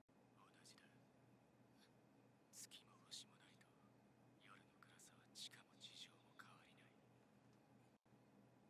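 Near silence with a faint low hum, broken by short snatches of faint, whisper-like speech about two and a half seconds in and again from about four and a half to six and a half seconds in.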